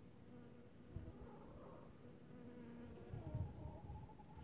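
Honeybee buzzing faintly as it flies close by, its hum wavering in pitch. A few low thumps come about a second in and again near the end.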